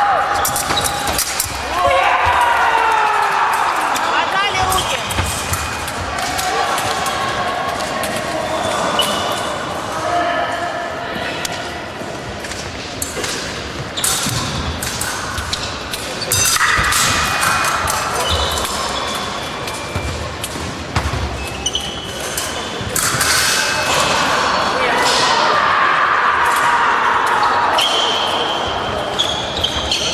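Echoing voices and shouts in a large sports hall, over repeated thuds of fencers' footwork on the wooden floor and sharp clicks.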